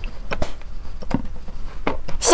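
A few short, light clicks and knocks, about three or four, from wooden skewers and snow mochi being worked in glass bowls of melted chocolate and pink coating.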